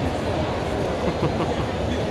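Indistinct crowd chatter in a large exhibition hall over a steady low rumble.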